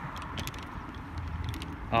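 Steady low rumble of wind on the microphone, with no other clear sound.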